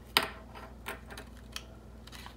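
A few small clicks and taps as a plastic glue stick and a folded paper fortune cookie are handled on a tabletop. The loudest click comes about a fifth of a second in, with softer ones near the middle and toward the end.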